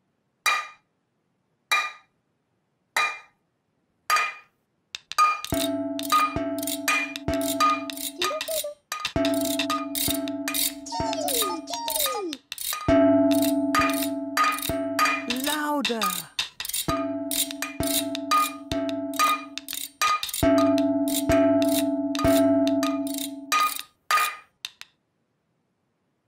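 Metal saucepans clanging in a rhythm, each strike ringing. At first the clangs are slow and evenly spaced; after about five seconds they come faster over held musical notes, which slide down in pitch twice.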